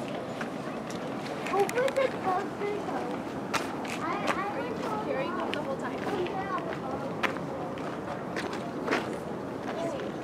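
Indistinct chatter of several people talking at a distance, over a steady background rush, with a few sharp clicks or footsteps on the paved path.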